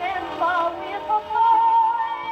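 A woman's singing voice played from an early 78 rpm shellac disc on an acoustic gramophone's soundbox, with little bass or treble, ending on a long held note with vibrato.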